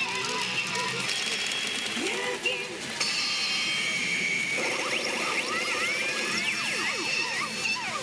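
Pachinko machine's electronic music and sound effects during its RUSH mode, with a voice in the first few seconds and a flurry of quick rising and falling electronic chirps in the second half.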